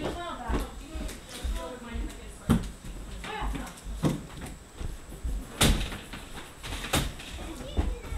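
Indistinct background voices of people talking, broken by three sharp knocks or thumps, the loudest about halfway through.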